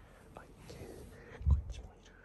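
Soft whispering, with a single short low thump about one and a half seconds in.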